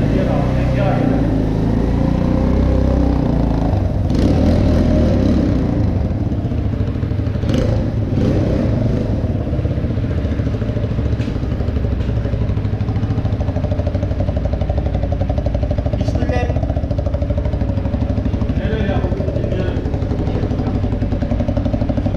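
Kuba TK03 motorcycle's single-cylinder engine, bored out from 50 cc to about 200 cc and fitted with a carburettor, running: uneven and louder for the first several seconds, then settling to a steady idle with an even pulse.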